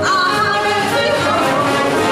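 A woman singing a swing tune over a live jazz band, her voice holding long, wavering notes above the piano, horns and drums.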